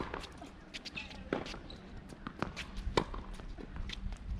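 Tennis ball struck with a racket on a serve, a sharp crack right at the start that is the loudest sound, followed by more racket hits and ball bounces on the hard court, spaced about half a second to a second apart, with light footsteps.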